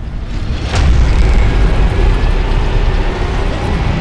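Loud film-trailer score and sound effects: a sharp hit a little under a second in, then a sustained dense rumble of music and effects with heavy deep bass.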